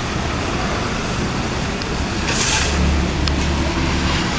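Street traffic noise: a steady low rumble of car engines, swelling louder with a rush of hiss about two seconds in as a vehicle passes close by.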